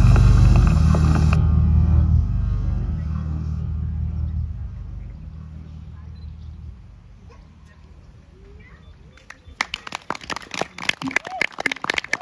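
A low, sustained musical drone from the PA speaker dies away over about six seconds, ending the piece. From about nine and a half seconds in, an audience starts applauding.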